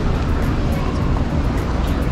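Supermarket background noise: a steady low rumble from a shopping cart rolling across a concrete floor amid the store's bustle, with background music under it.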